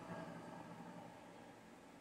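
Near silence: faint steady room hiss, a little louder in the first half second.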